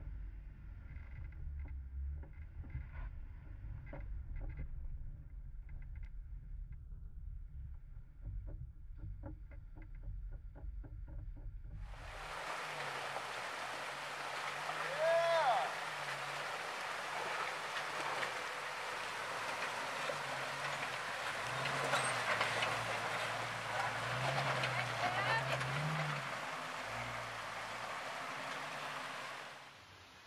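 A Jeep's engine drones low as it crawls a rocky dirt trail, heard from a hood-mounted camera, with scattered knocks and rattles. About twelve seconds in this gives way to a Jeep Wrangler driving through a creek crossing: a steady rush of stream water over rocks, with the engine's hum rising and falling under it and a brief voice about fifteen seconds in.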